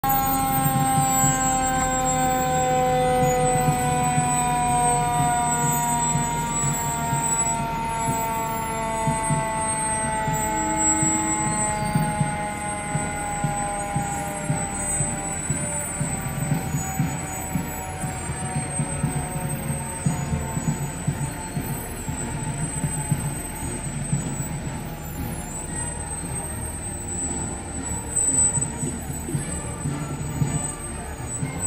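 Fire truck siren winding down, one long slow fall in pitch that fades out over about fifteen seconds, over the low rumble of the fire engines' diesel engines as they roll past.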